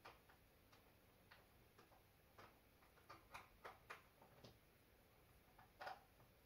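Near silence broken by faint, irregular clicks and taps from handling an HDMI cable plug at a TV's input port. The clicks bunch together in the middle, and the loudest comes near the end.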